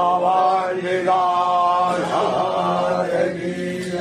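A male voice chanting a Hindu devotional mantra in long, held notes, phrase after phrase with short breaks between.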